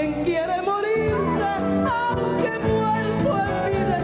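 A woman's voice singing drawn-out notes that bend and slide, over live band accompaniment of keyboard and electric guitar.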